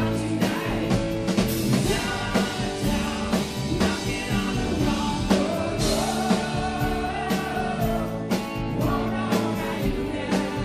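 Live rock band playing: a male lead vocal sings over electric guitars, bass and a drum kit keeping a steady beat, with a note held for about two seconds past the middle.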